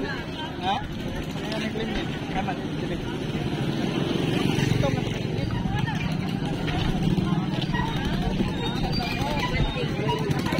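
Indistinct voices over a steady low engine rumble from a running vehicle.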